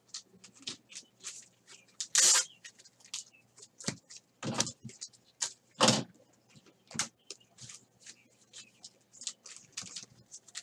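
A stack of baseball trading cards being thumbed through by hand, each card slid and flicked off the pile: an uneven run of crisp card snaps and swishes, a few of them louder and longer.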